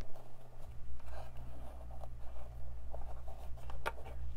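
Fingers rustling and scraping a fabric scarf against card stock while pressing it into place, over a steady low hum. A sharp click comes near the end.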